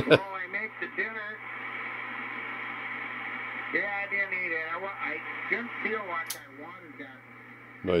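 Swan 700CX HF transceiver on receive, playing single-sideband voice from other amateur stations through its speaker over steady band hiss and a low hum. The radio talk comes in two stretches, near the start and in the middle.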